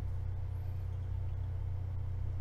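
Steady low hum with no other event, the kind of constant background hum a home recording setup picks up.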